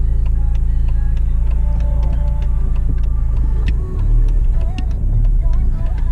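Car interior noise while driving: a steady low engine and road rumble with scattered light clicks. The rumble changes about four seconds in.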